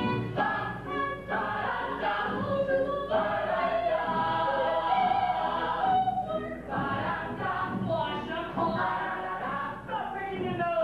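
Musical-theatre cast singing together as a chorus, in sung phrases with short breaks between them.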